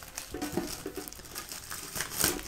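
Plastic shrink wrap crinkling faintly as fingers peel it off a metal collector's tin.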